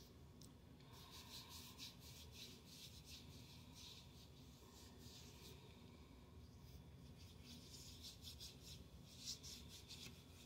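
Faint rubbing of hands working a thick shea lotion into the skin: soft, irregular swishes that repeat.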